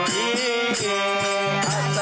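A Kannada devotional folk song (bhajan): a chant-like singing voice over sustained instrumental tones and a steady percussion beat.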